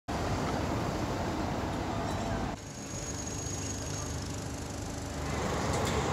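Street traffic noise from cars moving on a city street. It drops suddenly about two and a half seconds in, then slowly builds again.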